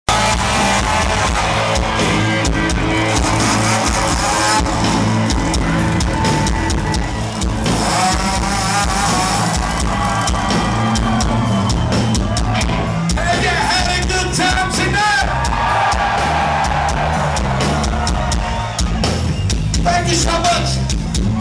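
A live rock band playing loudly in a club: electric guitar and drums, with a singing voice over them at times.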